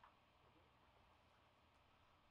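Near silence: room tone, with the guitar no longer sounding.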